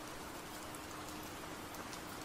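Steady rain falling, an even hiss that does not change, with a faint steady hum underneath.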